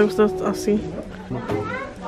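Voices over background music: talking or singing with steady held musical tones underneath.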